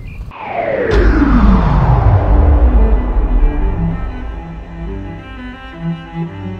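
Dramatic music over a slow-motion replay: a long falling pitch sweep drops into a deep bass rumble about a second in, followed by low sustained string notes that slowly fade.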